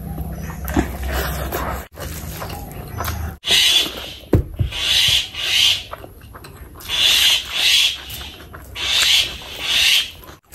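Close-miked eating sounds of a person eating rice and curry with their hand. A low chewing rumble comes first. From about three and a half seconds in there is a run of loud, wet squelches, several in a row, some in pairs.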